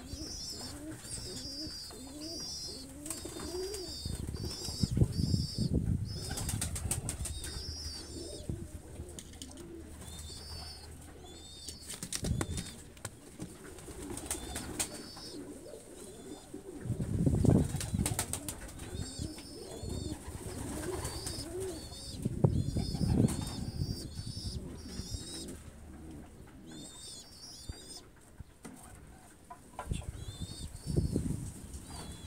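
Young pigeons (squabs) begging to be fed: repeated clusters of short high-pitched peeps, with some low coos early on and several bouts of wing-flapping.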